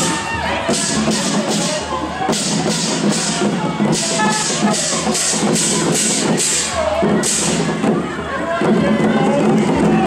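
Music with a rhythmic percussion beat, sharp strokes about two a second, mixed with voices and crowd noise.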